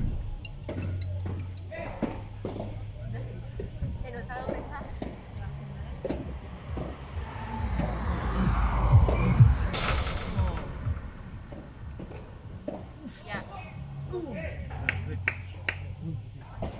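Padel rally: the ball is struck back and forth by solid padel paddles in sharp pops, with players' shoes scuffing on sanded artificial turf. A louder noisy stretch swells about seven to eleven seconds in, with a brief harsh burst near ten seconds.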